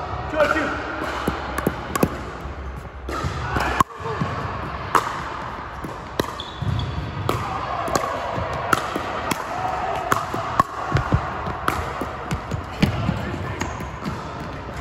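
Pickleball rally: sharp, irregular pops of paddles striking the hollow plastic ball and the ball bouncing on the hardwood floor, about one or two a second.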